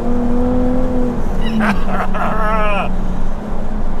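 Jaguar F-Type's V6 engine heard from inside the cabin, holding a steady note, then dropping to a lower steady note about a second and a half in, over tyre noise on a wet road. A man laughs over it.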